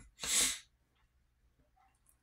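A man's short, sharp breath in, a brief hiss lasting about half a second.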